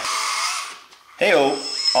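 The small electric motors of a LESU LT5 RC tracked skid steer running with a high whine, cutting off about two-thirds of a second in.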